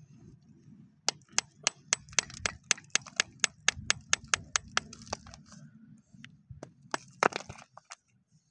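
A hand-held rock being struck with a hard object: a quick even run of sharp, clicking knocks, about four a second, starting about a second in and lasting some four seconds. A few scattered knocks follow, the loudest of them near the end.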